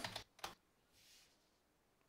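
Near silence, with one faint short click about half a second in, from a computer keyboard or mouse.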